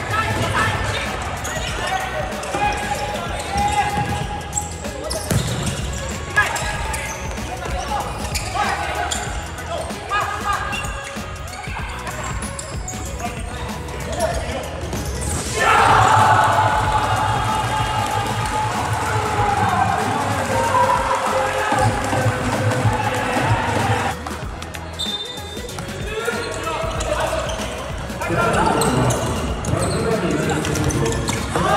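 Indoor futsal play echoing in a sports hall: the ball being kicked and bouncing on the court, with players shouting. About halfway through, a sudden loud outburst of shouting and cheering goes up as a goal goes in and carries on for several seconds.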